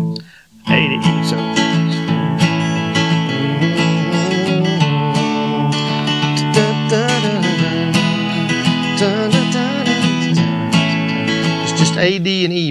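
Taylor steel-string acoustic guitar strummed in a steady down-up rhythm, working through an A, D and E chord progression, with a brief pause just after the start.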